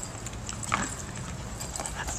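Faint sounds of an English Springer Spaniel trotting back with a plastic frisbee in his mouth: breathing, with a short puff of breath a little under a second in and a few light clicks, over a low steady hum.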